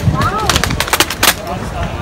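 Ceremonial drill team's rifles clacking during a rifle drill: a quick run of sharp clacks, about half a dozen, from about half a second in to about a second and a quarter, over crowd murmur.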